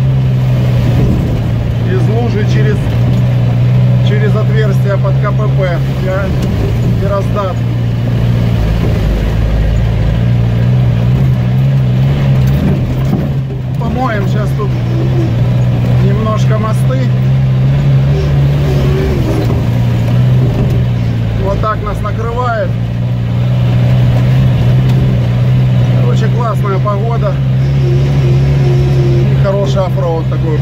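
UAZ off-roader's engine running steadily under way, a loud low drone with two brief dips, as it drives along a wet, rutted dirt track.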